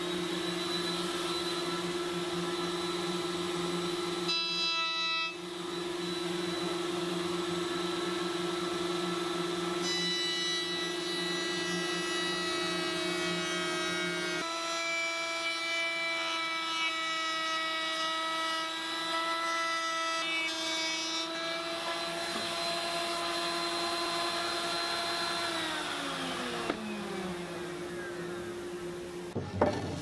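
Router mounted in a router table running at a steady whine while a bearing-guided bit shapes the edges of a wooden frame. About 26 seconds in, the motor winds down to a stop. A short knock follows near the end.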